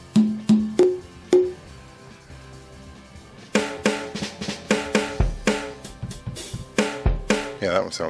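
Drum sounds from a BOSS Dr. Rhythm DR-3 drum machine, played by tapping its pads. First come four pitched percussion hits within the first second and a half, two lower and two higher. After a pause there is a fast run of drum-kit hits, with two deep kick-drum thuds about two seconds apart.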